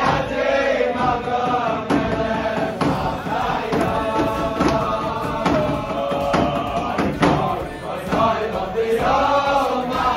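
Group of young male voices singing a tune together, with sharp percussive hits about once a second.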